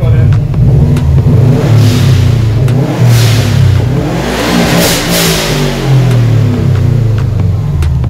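Subaru Impreza WRX's two-litre turbocharged flat-four being revved hard several times, the pitch climbing and dropping with each blip. A loud hiss comes from the dump valve venting as the revs drop, about three and five seconds in.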